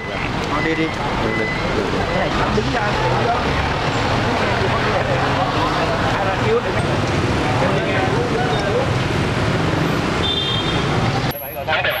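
A tow truck's engine running steadily under overlapping voices and street noise. Near the end it gives way to quieter talk.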